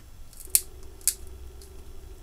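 Combination pliers squeezing and crunching the ceramic body of a small thermal fuse: two short sharp clicks, about half a second apart, with a few fainter ticks.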